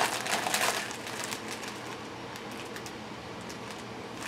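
Clear plastic packaging crinkling as it is handled, busiest in the first second, then fading to faint, scattered rustles.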